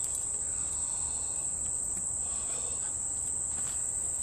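Steady high-pitched insect chorus holding one unbroken tone, with faint rustling as a person gets up out of a folding camp chair.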